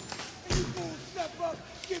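Men shouting during a police room entry, with a heavy thump about half a second in and a lighter knock near the end.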